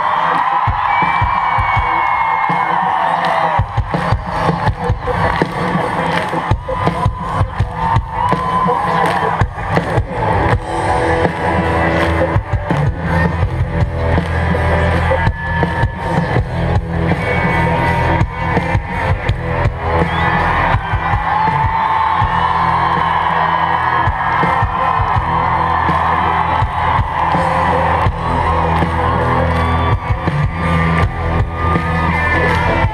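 A live rock band playing loudly through a stadium PA, heard from within the audience: a steady drum beat under a sung melody, with the crowd cheering and whooping.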